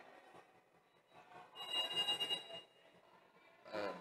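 A whistle blown once in a large indoor hall, a steady shrill tone lasting about a second and starting about a second and a half in, over faint hall noise.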